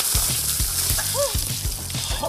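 A bucket of ice water dumped over a puppet, splashing down in a dense rushing hiss that thins out over the two seconds. Under it runs a music track with a steady bass beat.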